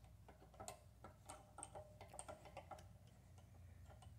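Faint, quick clicks and taps of steel on steel as a small precision grinding vise is handled in a larger mill vise, about a dozen in the first three seconds, over a low steady hum.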